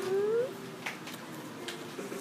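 The end of a held sung note from a children's song, sliding up in pitch and stopping about half a second in. A quieter stretch follows, with two faint taps.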